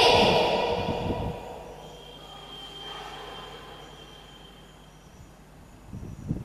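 Whiteboard marker squeaking faintly against the board while writing, a thin high squeal, after a louder sound fades away in the first second or so.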